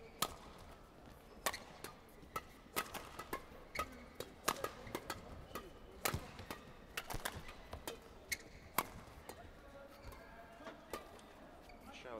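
Badminton rackets striking a shuttlecock in an indoor hall: a string of sharp, short pops spaced irregularly, one every half second to two seconds.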